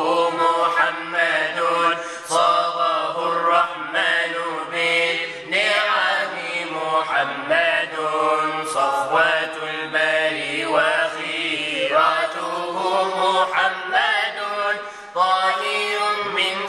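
A voice chanting an unaccompanied Arabic nasheed in praise of the Prophet Muhammad, in long, wavering, ornamented lines held over a steady low drone.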